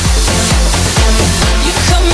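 Electronic dance music from a live DJ set, played loud over the venue's sound system, with a heavy bass line and a steady kick drum about twice a second.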